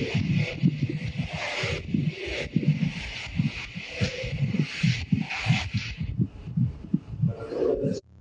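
Loud background noise of a busy, noisy room: a choppy, irregular jumble of indistinct sounds with a constant hiss above it, with no clear sound of the robot.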